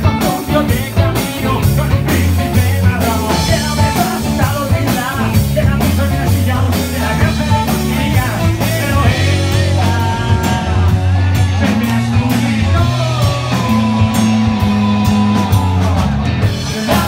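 Live rock band playing, with electric guitar, bass guitar and drums. The cymbal and drum hits thin out in the second half while the bass and guitar carry on.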